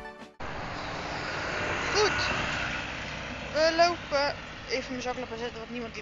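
Background music cuts off abruptly at the very start. It gives way to a steady outdoor rushing background with snatches of people talking as they walk.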